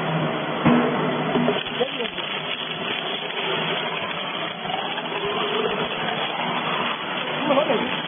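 Twin-shaft shredder running under load, its toothed cutter rolls grinding and breaking up material fed into them in a steady loud grinding noise, with sharp cracks about a second in and again near the end.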